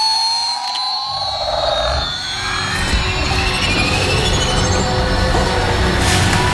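Film soundtrack: a battery-powered toy space shuttle's electronic launch sound starts suddenly and loudly, with gliding whistle-like tones, and a deep rumble joins about a second in, under dramatic film music.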